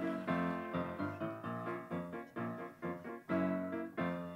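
Piano-style keyboard playing a song's instrumental break, chords struck in a steady rhythm with no voice.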